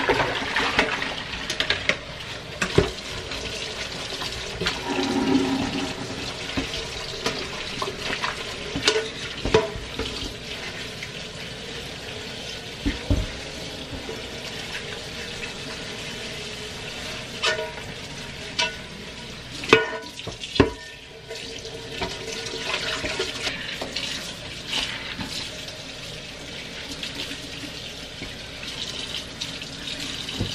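Kitchen tap running into a stainless steel sink while a frying pan is scrubbed with a sponge and rinsed, with several sharp knocks of the pan against the sink along the way.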